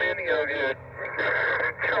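A man's voice received over 2 m single-sideband through the Yaesu FT-857D's speaker, thin and narrow like a telephone, too garbled to make out the words, with a steady low hum underneath.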